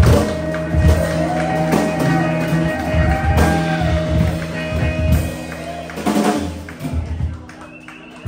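Live band of electric guitar, electric bass and drum kit playing an instrumental passage with sustained bass notes and drum hits. The sound thins out and dies away over the last two seconds.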